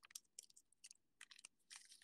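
Faint, scattered ticks and light scrapes of an Upper Deck hockey card being handled between the fingers, with a small cluster of them near the end.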